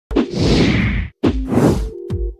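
Two whoosh sound effects in quick succession, each opening with a sharp hit.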